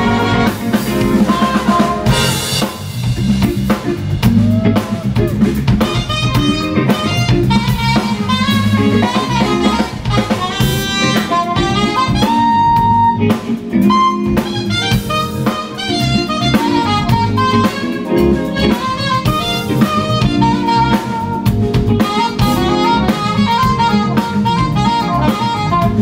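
Live smooth jazz band: an alto saxophone plays the melody over drum kit, bass, guitar and keyboards, with a trumpet playing alongside it at the start.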